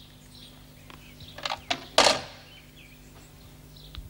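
Telephone handset put down on its cradle: a couple of softer knocks, then one sharp clack about two seconds in, over a low steady hum.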